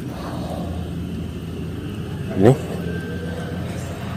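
A steady low rumble, with one short voice sound gliding upward in pitch about two and a half seconds in.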